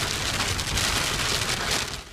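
Rain hitting a car's windshield and roof, heard from inside the car: a dense, steady hiss of drops.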